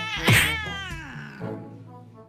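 A cat's loud yowl at the start, falling in pitch and fading over about a second, over background music.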